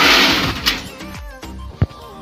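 Plastic crate being shifted across a floor: a loud scraping rush at the start that fades over about a second, then a single sharp knock near the end, with music playing underneath.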